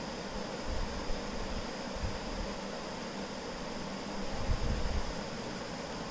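Steady room background noise: an even, fan-like hiss with a faint high whine running through it. A few soft low bumps come about four and a half to five and a half seconds in.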